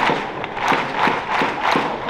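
Baseball stadium crowd in the stands beating a steady rhythm of sharp claps or hits about three times a second over a continuous crowd din.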